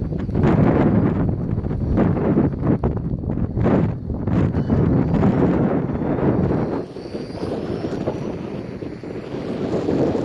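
Strong crosswind buffeting the microphone in gusts. Under it, a faint high whine from a Vaterra Kemora 1/14-scale RC car's electric motor on a 3S LiPo as it speeds down the road, rising in pitch about seven seconds in.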